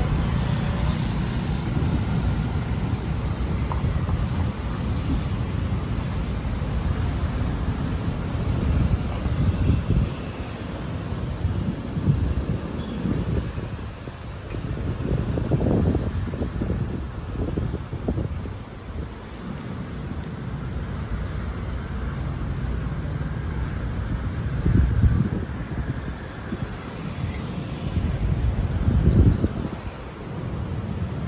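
Steady city road traffic, cars passing on a multi-lane street, with a few louder low rumbles around the middle and near the end.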